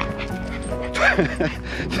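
An excited dog whining and yipping about a second in, a few short cries that fall in pitch, as it strains on its lead. Background music plays steadily underneath.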